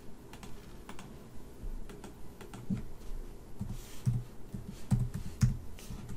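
Keystrokes on a computer keyboard: irregular taps and clicks, louder and more frequent in the second half.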